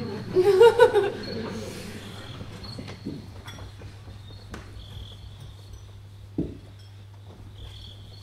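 Women laugh briefly at the start, then crickets chirp steadily, a night-time stage sound effect. A single dull thump comes about six and a half seconds in.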